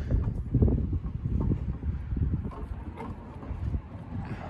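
Small caster wheels of a homemade wooden cart rolling over blacktop: a continuous low rumble with irregular knocks and clatters as the cart is pushed into place.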